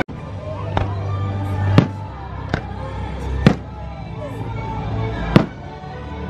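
Aerial fireworks shells bursting overhead: five sharp bangs spread about a second apart, three of them much louder than the rest. Music plays faintly underneath.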